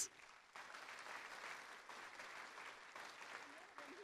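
Faint audience applause, starting about half a second in and dying away near the end.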